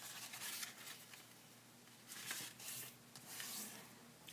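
Faint rustling and sliding of a sheet of origami paper handled and creased by hand as it is folded in half into a triangle, in a few soft swishes.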